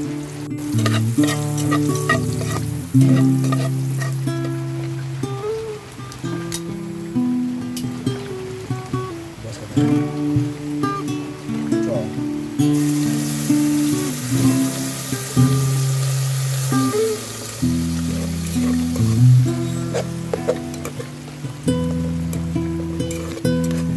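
Chopped garlic frying in a metal pot over a wood fire, under plucked acoustic-guitar music. About halfway through, canned sardines are poured into the hot oil and a much louder sizzle starts, with light knocks from stirring.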